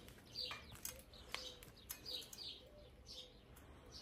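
Small birds chirping faintly, short falling chirps repeated every half second or so, with a few faint clicks.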